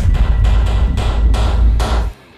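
Loud, eerie horror-trailer sound design: a deep bass rumble under several heavy percussive hits, cutting off sharply at the end.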